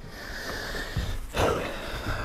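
A person sitting down in a leather armchair: the leather seat and clothing rustle, with one louder rush of noise about one and a half seconds in as he settles.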